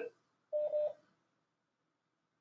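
A short electronic beep from a phone: one steady mid-pitched tone lasting under half a second.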